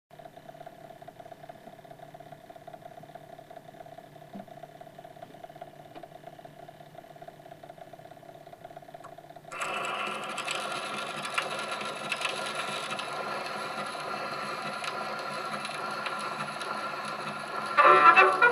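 Edison Diamond Disc phonograph turntable running, with a faint steady hum. About halfway through, the diamond reproducer drops onto the disc and a much louder steady hiss of groove surface noise takes over. Near the end the recorded dance-band music begins.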